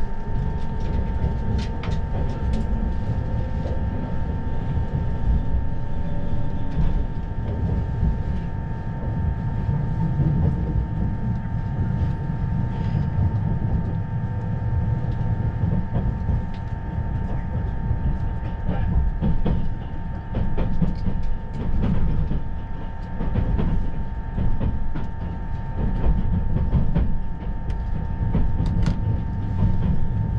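Inside the cabin of a 651 series limited express electric train as it pulls out and gathers speed: a steady running rumble with a constant high whine, a motor tone rising in pitch over the first several seconds, and scattered clicks from the wheels over rail joints and points.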